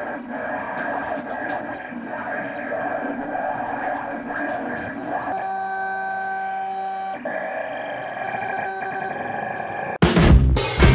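Vinyl cutting plotter running a cut job on blue vinyl: its stepper motors whine at shifting pitches as the blade carriage and feed rollers move, with a steadier held whine for about two seconds past the middle.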